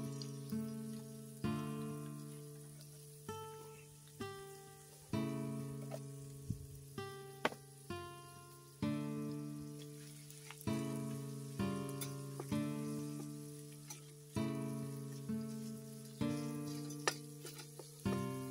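Background music of an acoustic guitar picking slow notes and chords, about one a second, each ringing out and dying away. Under it, faint sizzling of minced meat frying in a pan.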